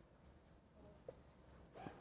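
Faint dry-erase marker writing on a whiteboard: a few short, soft scratches barely above room tone.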